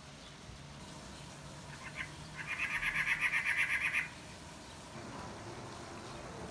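A bird calling: one fast, chattering run of about a dozen harsh notes, starting about two and a half seconds in and lasting under two seconds.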